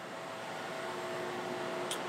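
Steady hum and hiss of CNC machinery running in a machine shop, with faint steady tones, slowly growing a little louder.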